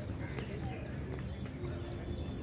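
Wind buffeting the microphone of a camera carried on a moving bicycle, a steady low rumble, with a few light clicks and rattles and faint chirps.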